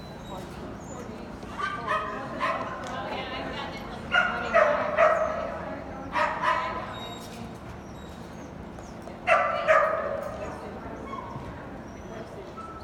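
A dog yipping and whining in four short, loud bursts spread across a few seconds, over a steady hum.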